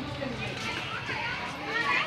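Indistinct chatter of people passing close by, with a louder, higher-pitched voice, like a child's, near the end.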